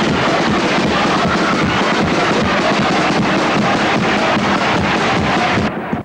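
Live music from a carnival chirigota group on stage, loud and dense with irregular drum beats, cutting off abruptly near the end.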